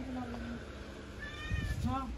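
Domestic cat meowing: one low, drawn-out meow that trails off about half a second in, then a higher, arching meow in the second half. A dull low bump sounds beneath the second meow.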